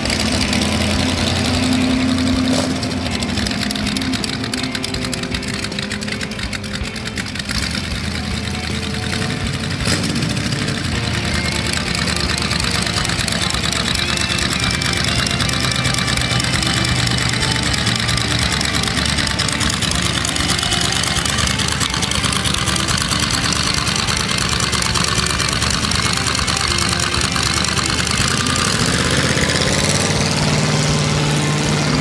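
Early-1960s Chevrolet 327 V8 with 11:1 compression and three two-barrel carburettors, in a 1923 Model T roadster pickup hot rod, running at a low idle with a loud, steady exhaust note as the car rolls slowly. Near the end the pitch rises as it accelerates away.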